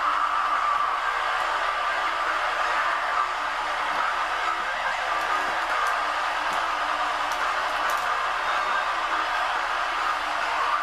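A steady, even rushing noise, with faint low tones coming and going underneath.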